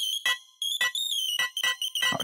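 A built-in FL Studio synthesizer lead sounding short, high-pitched beeping notes, about six in two seconds, each note heard as it is placed in the piano roll.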